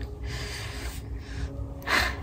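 A person's long audible breath, a soft hiss lasting a little over a second.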